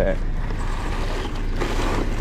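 Plastic-wrapped cases of bottled water being handled and stacked onto a folding hand-truck dolly: plastic crinkling and light knocks, stronger in the second half, over a steady low hum.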